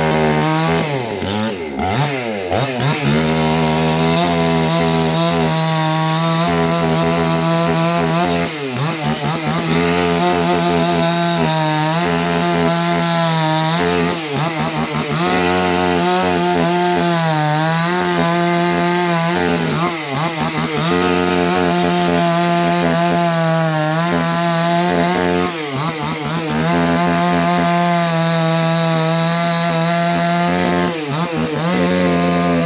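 Silen GF008 two-stroke petrol chainsaw, newly run in, running at full throttle while cutting through a log. The engine note sags briefly and recovers each time the chain bites into the wood, about six times.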